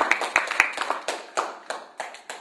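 Audience applauding, the clapping thinning out and fading to a few scattered claps.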